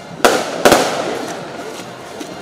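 Two loud, sharp firecracker bangs less than half a second apart, the second trailing off in a short echo.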